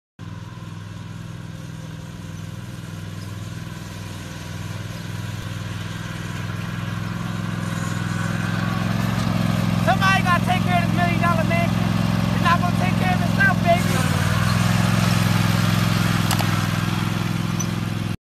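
Toro zero-turn riding mower's engine running steadily while mowing grass, growing louder as it comes closer and easing off a little near the end, with a man's voice over it in the middle.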